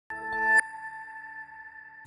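Short electronic TV news ident sting: a synth chord swells for about half a second and cuts off sharply, leaving a high ringing tone that slowly fades away.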